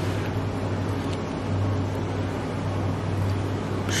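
Steady low hum with a faint hiss: room tone, with a faint tick about a second in.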